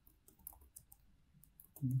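Computer keyboard keys clicking in short, irregular taps as a few characters are typed. A voice starts speaking near the end.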